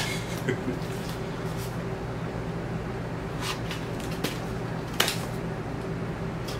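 Scissors snipping and scraping at the tape and cardboard of a vinyl record mailer: a few sharp separate clicks, the loudest about five seconds in, over a steady low room hum.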